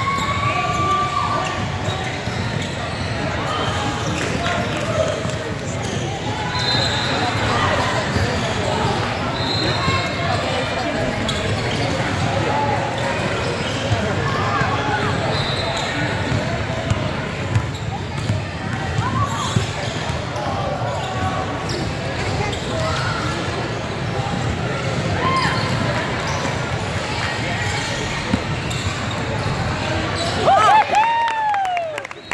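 Basketball game in a large gym: a ball bouncing on the hardwood floor as it is dribbled, sneakers squeaking briefly, and indistinct shouts from players and spectators, all echoing in the hall.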